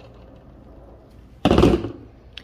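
A wire stripping and crimping tool set down on a tabletop: a single short clatter about one and a half seconds in.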